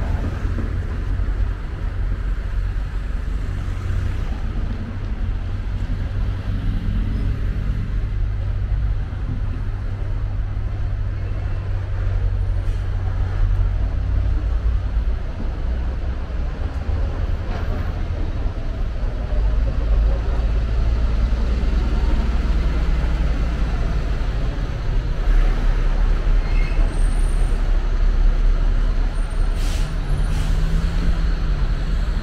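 Street traffic: cars and city buses running past in a continuous low rumble of engines and tyres, a little louder in the second half.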